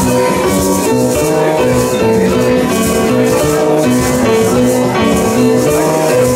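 Live jazz band playing an instrumental passage, with electric bass, keyboard and saxophone over maracas shaken in a steady rhythm.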